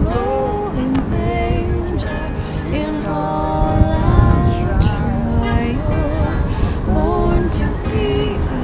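A Christmas carol with a singer holding long, gliding notes over instrumental backing, heard over a steady low rumble of wind and road noise.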